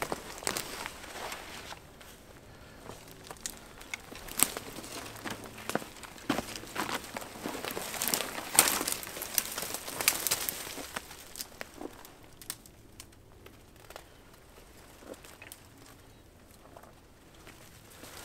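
Footsteps crunching through dry fallen leaves, with brittle twigs and brush crackling and snapping as someone pushes through a thicket. It is busiest in the first ten seconds or so, then thins to faint, scattered rustles.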